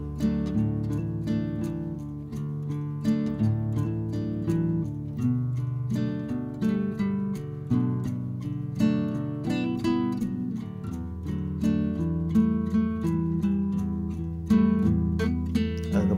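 Background music: an acoustic guitar tune of quick plucked and strummed notes.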